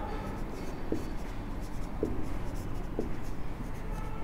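Marker pen writing on a whiteboard: quiet scratching strokes as words are written.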